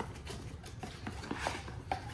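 Cardboard box being opened by hand and a plastic outlet extender slid out of it: scattered light taps, scrapes and cardboard rustles.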